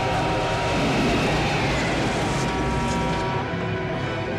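A car driving past, its road and engine noise swelling about a second in and fading away, under film-score music with long sustained chords.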